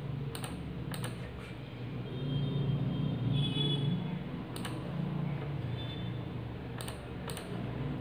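Computer mouse clicking on a DVR's on-screen keyboard while a security code is entered: several short, sharp clicks at irregular intervals over a faint low hum.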